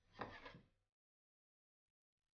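A brief scrape of a picture frame on a wooden bedside table as it is picked up, lasting under a second, followed by near silence.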